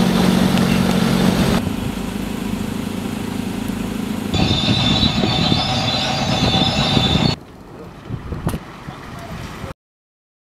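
Heavy vehicle engine sounds in several abruptly cut sections. The first is a steady engine hum. The loudest is a bulldozer's engine running with a rough low rumble and a high whine. A quieter stretch follows, with a single sharp click.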